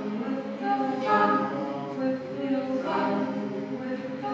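Unaccompanied choir voices holding several overlapping long notes in a slow vocal drone, with breathy hissing swells about one and three seconds in.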